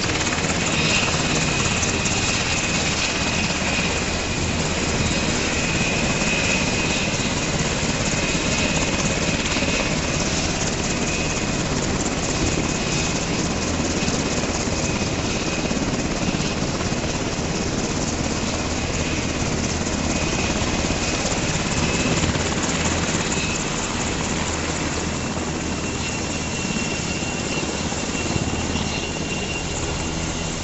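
Black Hawk military helicopter running steadily close by: a fast, even rotor chop with a thin, steady high turbine whine over it.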